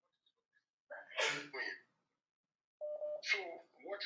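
A person sneezing once, a single sharp burst about a second in.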